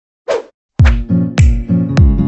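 A short whoosh sound effect about a quarter second in. Then, just under a second in, background music starts with a deep drum beat about every 0.6 seconds over sustained pitched tones.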